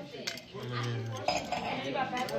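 A glass drinking flute clinking lightly against a glass tabletop: a couple of sharp knocks as it is handled and set down. A short hummed voice sounds between them.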